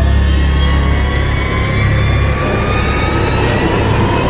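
Ominous horror-film background music: a loud low drone under high sustained tones that slide slowly downward in pitch, the drone thinning out partway through.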